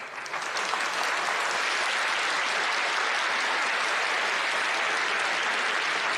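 A large audience clapping. The applause swells within the first second, then holds steady and even.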